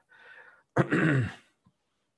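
A man clearing his throat once, about a second in, after a faint rasp.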